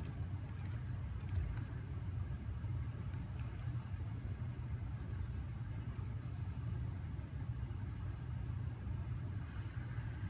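Steady low rumble of room tone in a large hall, with the ventilation running; no music.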